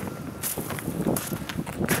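Footsteps on packed snow, about three steps.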